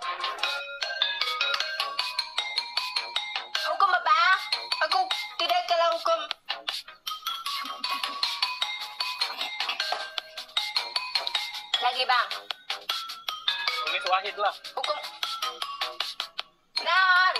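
Bright electronic mobile-game music and sound effects from a phone: quick beeping, ringtone-like notes with warbly, sliding cartoon-like glides about four seconds in and again near twelve seconds.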